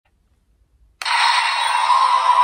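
Electronic sound effect from the DX Perfect Wing Vistamp transformation toy's small built-in speaker, starting suddenly about halfway through: thin and tinny with no bass, leading into the toy's electronic standby music.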